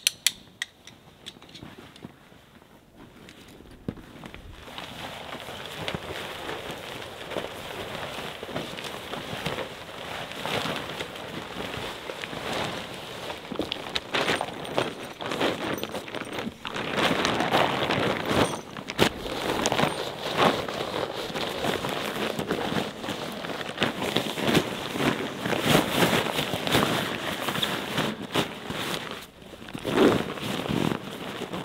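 Synthetic tent fabric of a Helios Breeze 2 dome tent rustling and crinkling as it is folded and handled on the ground, growing louder and busier through the second half. A single sharp click sounds at the very start.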